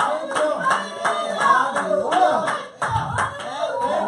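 Steady rhythmic hand-clapping, several claps a second, in time with voices singing.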